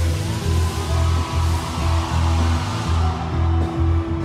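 Live band playing an instrumental passage without vocals, with a heavy bass line pulsing about twice a second under sustained keyboard tones.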